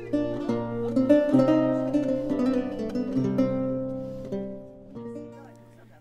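Background music of plucked guitar notes, fading away over the last couple of seconds.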